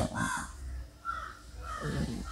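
A bird calling in the background with a few short calls, over a low steady hum.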